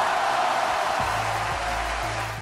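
Intro music sting for a logo animation: a steady hissing swoosh, with a deep bass note coming in about halfway through.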